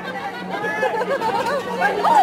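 Chatter: several people's voices talking over one another, with a steady low hum underneath.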